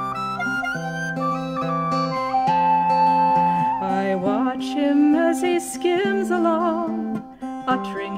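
Folk-song accompaniment: a flute-like melody of held notes moving in steps over plucked, guitar-like chords, with a short drop in loudness near the end.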